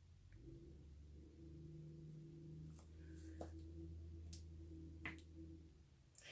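Faint, steady low hum that starts just after the opening and stops shortly before the end, with a few faint light clicks in the second half.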